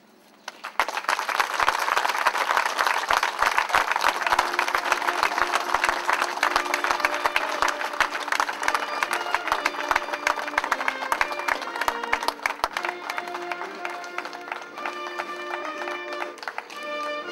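A crowd breaks into applause under a second in, dense at first and thinning out over the following seconds. Music with a clear melody comes in a few seconds in and grows clearer as the clapping fades.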